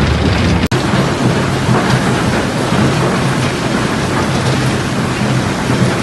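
Stone crushing and washing plant running: a loud, steady wash of machinery noise and moving stone over a low hum, broken sharply once less than a second in.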